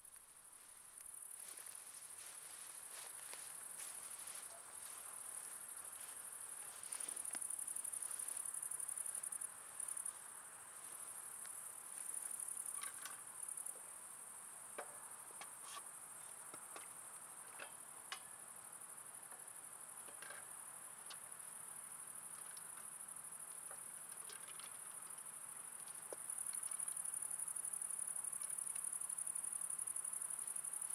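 Crickets chirping in a steady high-pitched chorus that swells louder about a quarter of the way in and again near the end, with a few faint scattered clicks.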